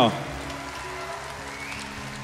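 Faint audience applause over a soft chord held steady by the band.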